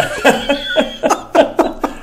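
Several people laughing together in short, irregular, breathy bursts.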